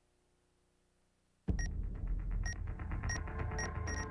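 Silence, then about a second and a half in a sudden deep boom opens a low rumbling synthesized music bed, over which a digital-clock sound effect beeps five times, the beeps coming faster and closer together.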